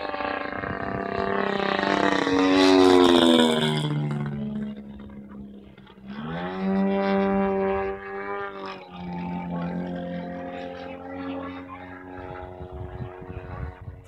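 Engine of a radio-controlled Yak 54 aerobatic model plane in flight, with a pitch that keeps changing. The pitch falls away about two to four seconds in, climbs sharply about six seconds in and holds, then settles to a steadier, lower drone.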